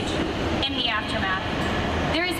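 A young woman's voice giving a speech through an arena PA system, heard as a short phrase about halfway through over a steady low rumble of room noise.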